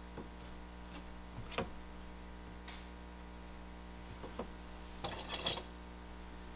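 Hand tools tapping and clicking lightly against a wooden workbench and clay slab a few times, then a brief scrape and rattle of tools near the end, over a steady low hum.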